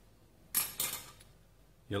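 Junior hacksaw set down on a hard surface: a short metallic clatter, two quick knocks about half a second in that ring out briefly.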